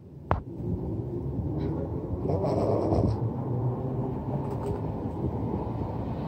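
Steady low rumble of a passing vehicle, with a single sharp click just after the start; it swells slightly a little past two seconds in.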